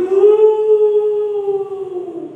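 A man's voice holding one long drawn-out note, the word "give" stretched out, rising a little at first, then sliding down and fading near the end.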